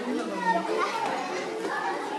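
Voices of children and adults talking over one another in a large, echoing room.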